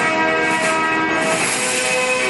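Several bells ringing at once, many overlapping tones held at a steady level.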